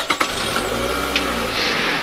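Car sound effect: a car engine starting with a few clicks at the start, then running steadily as the car pulls away, getting a little louder near the end.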